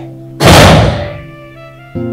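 A single loud, heavy thud about half a second in, dying away over most of a second, over background music with held chords.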